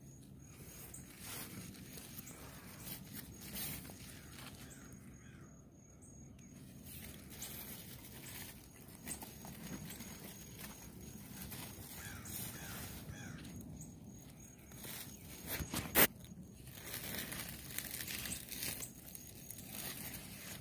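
Large bottle gourd (upo) leaves and vines rustling and brushing close to the microphone as a hand pushes through the plant, with one sharp click about three-quarters of the way through.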